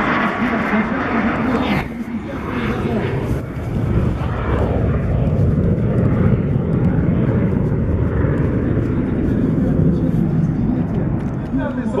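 Deep, steady roar of a Tu-160 strategic bomber's four jet engines after a low flyover. The rumble swells a few seconds in and holds. A man is talking over it in the first two seconds.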